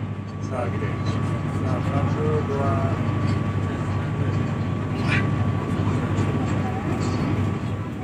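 Steady low rumble of a passenger train running, heard from inside the carriage, with a faint steady whine through most of it. Faint voices come and go near the start.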